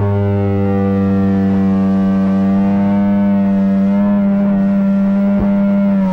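Amplified electric guitar holding one low droning note with many overtones, steady and unchanging, with a couple of faint clicks about five seconds in.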